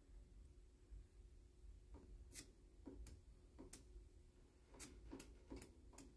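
Faint, sharp clicks from a homemade pulse motor's switching as its floating disc rotor starts to turn. There are none for the first two seconds, then they come irregularly and more often towards the end as the rotor slowly picks up speed.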